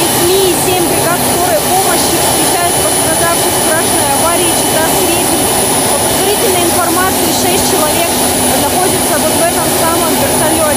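Helicopter turbine engines running loud and steady, with a constant high whine, while a woman talks over the noise.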